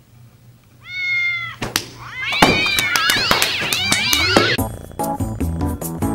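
A cat meows once briefly, then gives a long wavering yowl of about two seconds that rises and falls in pitch. Music with a steady beat comes in near the end.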